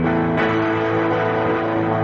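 Background music led by guitar, with sustained chords and a new chord struck about half a second in.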